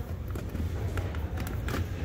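Steady low background rumble of a large store with a few faint clicks as the try-me button on a giant animated skull prop is pressed. The prop gives no sound or response.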